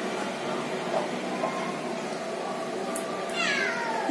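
A cat meowing once near the end, a short call falling in pitch, over a steady background hiss.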